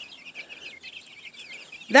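A flock of young chicks peeping: many short, high chirps overlapping in a quick, busy patter.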